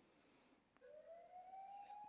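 Near silence: room tone, with a faint tone that glides slowly upward in pitch through the second half.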